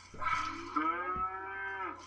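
A cow mooing: one long, level call lasting nearly two seconds, with a short low thump about halfway through.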